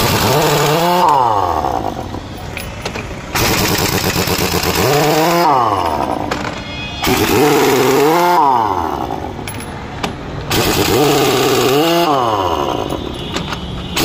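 Heavy pneumatic impact wrench run in repeated bursts on a truck's wheel nuts. Its whine rises and falls several times as it spins up and winds down, with stretches of harsh, even noise in between.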